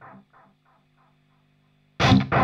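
Electric guitar played through the Devil's Triad pedal's delay: the repeats of a just-played note echo back several times at even spacing and fade away within about a second, with the feedback turned up for more repetitions.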